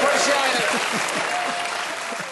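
Studio audience applauding, slowly fading toward the end.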